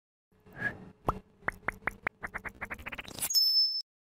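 Animated logo sound effect: a run of short pitched pops that come faster and faster, building into a swell that ends in a brief high ringing tone.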